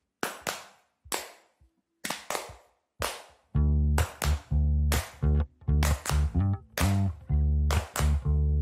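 Song intro of sharp hand claps in an uneven, syncopated rhythm; about three and a half seconds in, a loud low bass line comes in under the claps.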